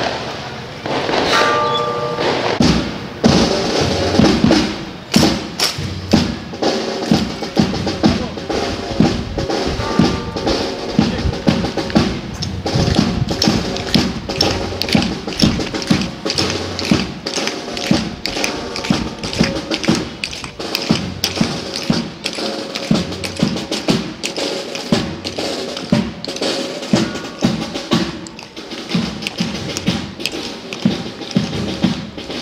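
Procession drums, snare and bass drum, beating a steady march rhythm of a little under two strokes a second, with other instruments holding steady notes over it.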